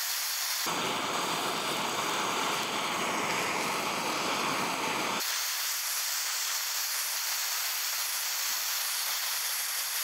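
Handheld torch flame hissing steadily against a combination padlock, melting through the lock's body. About a second in the hiss turns fuller and louder, then drops back to a thinner hiss about five seconds in.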